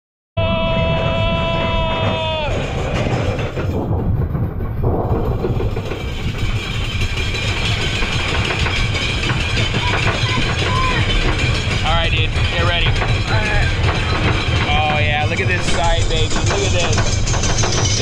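Giant Dipper wooden roller coaster train running on its track, a steady low rumble, with riders' voices over it from about ten seconds in. It opens with a held tone of about two seconds.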